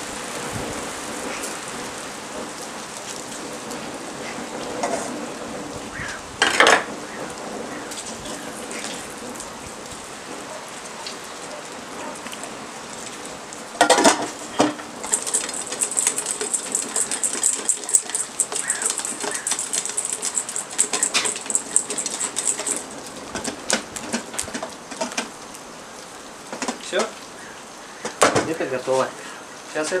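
Langoustines frying in hot oil in a metal pot over a charcoal grill, a steady sizzle, with clanks of the pot and utensils. Two loud knocks come about six and fourteen seconds in, followed by several seconds of denser crackling.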